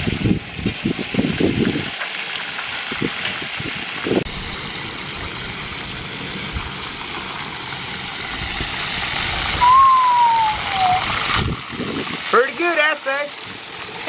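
Hot oil sizzling steadily around whole tilapia deep-frying in a steel disc wok. There is a single falling tone about ten seconds in and a voice shortly before the end.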